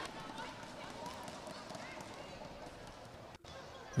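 Faint indoor arena ambience: a low murmur of crowd voices in a volleyball gym, with a brief dropout a little over three seconds in.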